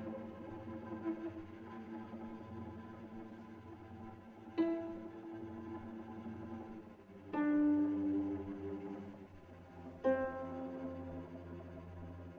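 Solo cello playing long sustained notes, with three sudden sharply accented notes about three seconds apart, each ringing on and fading.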